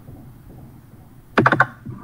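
Faint room noise, then about one and a half seconds in a quick cluster of sharp clicks like computer keyboard keys, close to the microphone, with a brief bit of voice mixed in.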